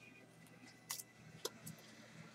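Very quiet handling sounds: a few faint clicks and crinkles as fingers pick at the paper wrapper on a new marker.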